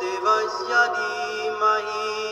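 Devotional mantra chanting set to music, with long held notes that step from one pitch to another.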